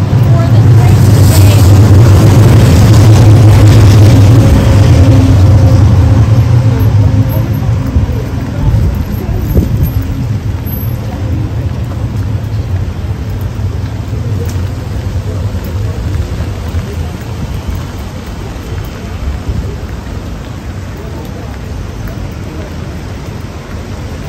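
A city tram running past close by, a loud low rumble with a faint whine that fades after about seven seconds. Steady rain and wet street noise follow.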